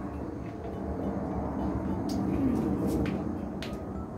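Steady low background rumble of outdoor ambient noise, swelling a little in the middle, with a few faint clicks.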